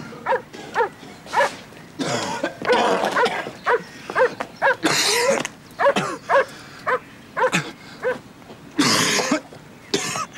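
A man coughing and gasping over and over in short, hoarse, voiced bursts, with longer, harsher coughs about five seconds in and near the end: he is choking on smoke from a car bomb that has just gone off.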